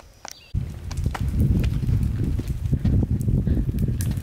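Footsteps and a pushchair's wheels rolling over asphalt while it is pushed uphill: a low rumble with many small knocks and rattles that starts suddenly about half a second in.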